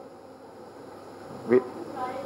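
Room tone in a meeting room: a faint steady hiss for about a second and a half, then a man briefly says a word.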